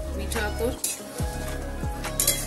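Flat spatula stirring simmering gravy in a metal kadai, with a few short scrapes against the pan and the gravy bubbling, over background music.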